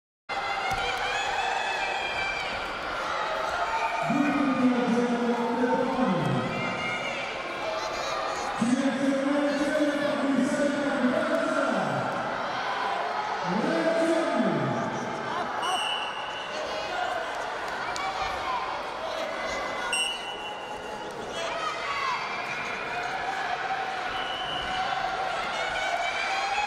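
Coaches and spectators shouting in an arena during a women's wrestling bout, with three long drawn-out calls that drop in pitch at the end. Two short referee's whistle blasts come after the middle.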